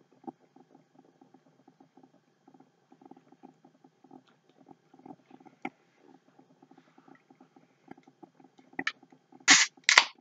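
Close-up chewing of pieces of cotton cloth: a steady run of soft mouth clicks, several a second. Near the end, a short loud hiss and crack as a drink can's tab is pulled open.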